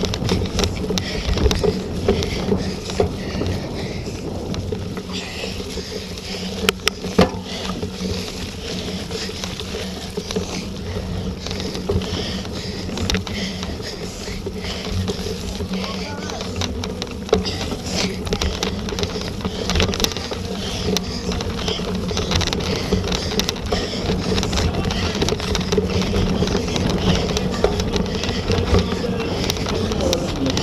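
Cyclocross bike ridden at speed over a grass and mud course, heard from a camera mounted on the bike: a steady rumble of tyres and wind on the microphone, with a few sharp knocks from bumps.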